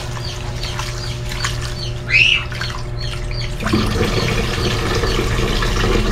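Tap water running into a plastic pot while rice is washed by hand, the splashing growing fuller a little over halfway through. Birds chirp throughout, with one louder rising-and-falling call about two seconds in.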